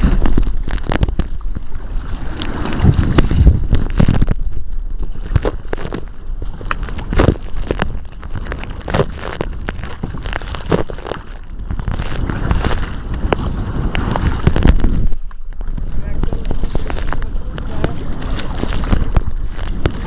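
Kayak paddles churning and splashing lake water in hard strokes, with spray pattering sharply against the camera close by and wind buffeting the microphone.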